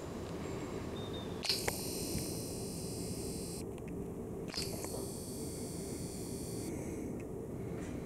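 Handheld camera handling noise: a steady low rumble with a few faint clicks. Two spells of high hiss, each about two seconds long, start with a click and cut off suddenly.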